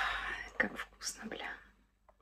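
A woman whispering a few breathy words under her breath; they trail off before the end.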